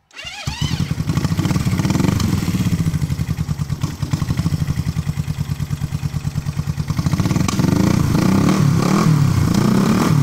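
1970 Honda CB350's air-cooled parallel-twin engine starting cold on a little choke: it catches at once and runs at a steady, even idle. From about seven and a half seconds in the engine note rises and wavers as it is revved a little.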